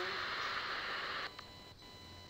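Steady recording hiss that drops away suddenly about a second in, leaving a faint floor of steady high electronic tones and a low hum.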